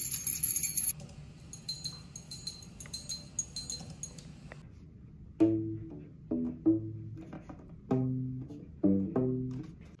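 A bunch of keys jingling, loud for the first second and then faint and ticking. From about five and a half seconds a ukulele bass plays a short line of low plucked notes, each starting sharply and dying away.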